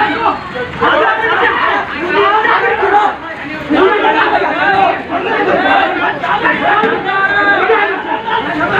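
Several men shouting and yelling over one another during a street fight, a dense tangle of overlapping voices with no clear words.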